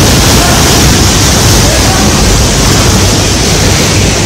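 Waterfall close by: a loud, steady rush of water plunging into a pool and churning.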